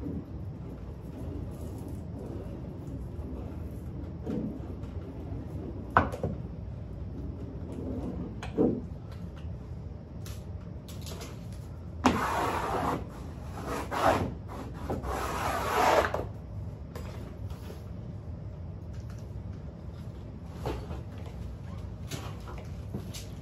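Wallpaper seam roller rubbing along a freshly double-cut grasscloth seam in three short passes, with a couple of light knocks before it and a steady low hum underneath.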